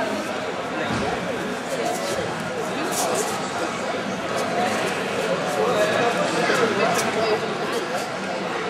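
Indistinct chatter and calls from a crowd of spectators, many voices overlapping, with a few sharp clicks about three seconds in and again near the end.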